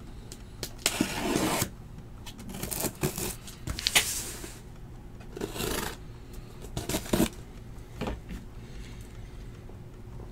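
Corrugated cardboard shipping case being handled on a table: a series of short scrapes and rustles with a few sharp knocks as it is turned and slid.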